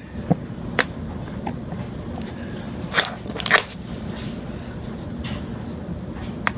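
Dominoes being handled and set in place: a few short, light clicks and taps, the sharpest a pair about three and a half seconds in, over a steady low room noise.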